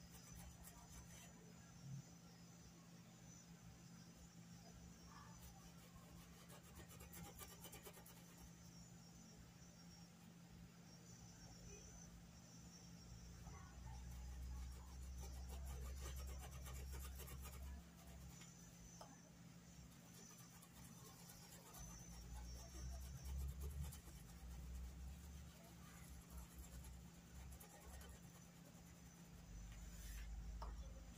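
Near silence: the faint scratchy rubbing of a paintbrush scrubbed in small circles over cotton cloth, working paint into the weave. A low rumble comes and goes in the second half.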